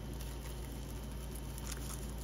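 Soft, faint crinkling of a clear plastic sleeve as a card inside it is handled, over a steady low hum.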